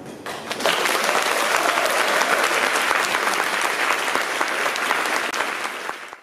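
Audience applauding at the close of a song recital, the clapping building up within the first second and then holding steady.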